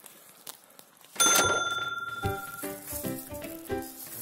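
A quiet first second, then a single bell-like chime rings out a little over a second in and fades. Background music with a regular run of pitched notes comes in just after.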